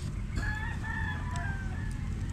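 A rooster crowing once, a call of about a second and a half starting about half a second in, over a steady low rumble.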